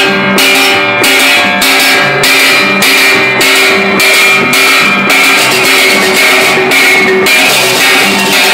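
Balinese gamelan beleganjur marching ensemble playing: clashing hand cymbals (cengceng) about twice a second over ringing bronze gongs struck with sticks.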